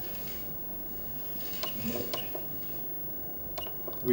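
Steady background hum with a few light, sharp clicks, a cluster about two seconds in and another near the end.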